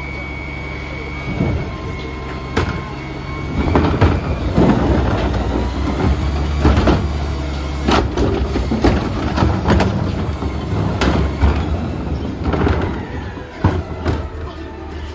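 CNG engine of a Mack LEU garbage truck running while the hydraulic tipper on its carry can lifts and dumps a trash cart, with repeated clanks and rattles of the cart and falling trash. The engine note rises while the tipper works.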